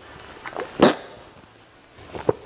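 A man gulping a drink from a can: two swallows within the first second, the second louder.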